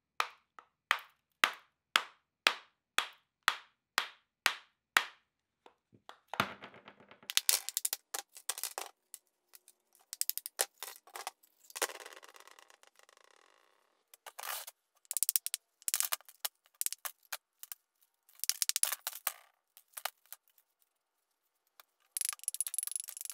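Small hammer tapping the ceramic investment shell on a freshly cast metal tube, about two sharp blows a second for the first five seconds. Then come irregular bursts of cracking and crunching as the shell breaks up and its pieces are broken away.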